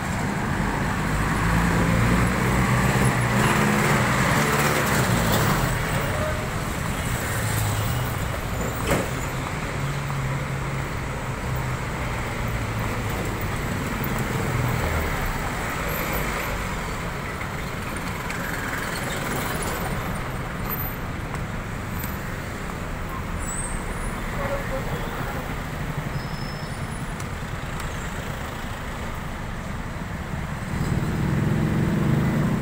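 Street traffic passing on a busy city road: car and jeepney engines running by over a steady wash of road noise. A low engine drone is strongest through the first half, with a single sharp click about nine seconds in.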